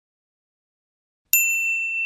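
After over a second of silence, a single bright notification-bell ding sound effect strikes and rings on with a clear steady tone.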